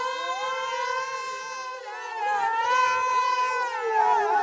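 A group of men singing unaccompanied, holding one long chord in several voice parts at once, in the layered southern Saudi style. The voices swell louder a little after halfway.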